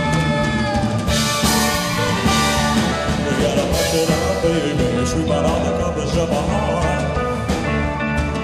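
Live rock-and-roll band playing: drum kit, bass, electric guitar and keyboards, loud and steady, with no lead vocal line picked out by the transcript.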